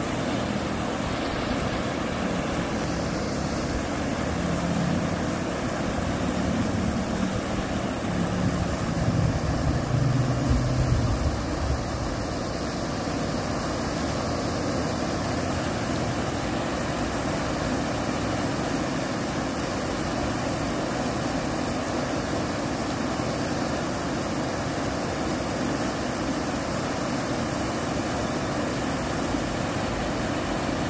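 River water pouring over a low weir, a steady rush of whitewater. A low drone swells in the first ten seconds or so and then fades.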